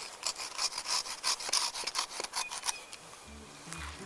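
Curved-blade hand pruning saw cutting through a tree branch with rapid back-and-forth strokes, finishing the cut about three seconds in. Background music comes in near the end.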